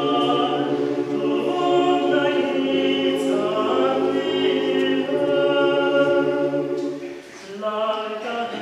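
Mixed choir of women's and men's voices singing a cappella in sustained harmony, with a short breath between phrases about seven seconds in.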